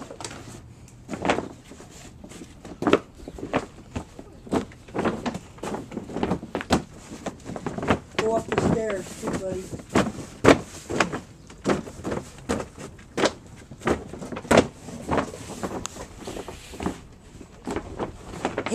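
Black reinforced polyethylene pond liner (BTL PPL-24) crinkling and rustling in short, irregular bursts as it is pressed and pushed by hand into the corners and against the walls of the pond hole.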